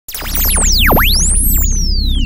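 Electronic music intro: many fast swooping synthesizer pitch sweeps, falling and rising, over a steady deep bass drone. It starts suddenly.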